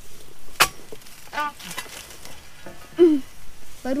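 One sharp chop about half a second in: the chisel blade of a dodos, a long-poled palm harvesting chisel, striking the stalk of an oil palm fruit bunch.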